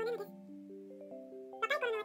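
Music-box-style background music: a slow melody of single, sustained notes. A narrating voice trails off at the start and comes back in near the end.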